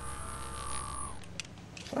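Steady electronic hum with a thin high whine, the film's sound effect for an x-ray vision scan, fading out about a second in. A faint click follows.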